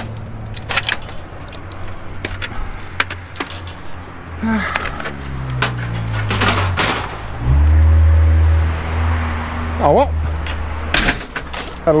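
Plastic and metal parts of a scrapped PC tower clicking and clattering as they are pulled about and handled, over the low rumble of a motor vehicle engine nearby. The engine's pitch falls about halfway through; it is loudest near the end and stops shortly before the end.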